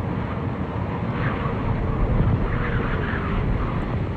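A steady low rumble with a faint wavering hum. A few faint high chirps come in the middle.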